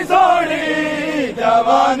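Men's voices chanting a Punjabi noha (Shia mourning lament) together in long, drawn-out sung phrases, with a brief break about two-thirds of the way through.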